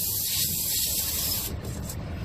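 Tire-repair tool being worked in a puncture in a semi-trailer tire's tread, rubbing against the rubber, with a hiss that cuts off about one and a half seconds in.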